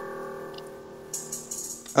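Music playing quietly in the background: a held chord, joined about a second in by a shimmering high percussion layer.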